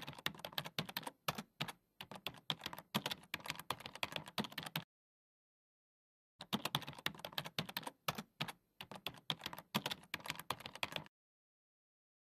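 Keyboard typing sound effect: rapid keystroke clicks that go with slide text being typed out on screen. They come in two runs of about five seconds each, with a dead-silent gap of about a second and a half between them.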